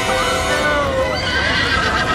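A horse whinnying, its call wavering up and down in pitch, over film score music.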